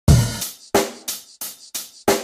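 Background music: a drum beat of sharp kick-and-cymbal hits with gaps between, the first the loudest.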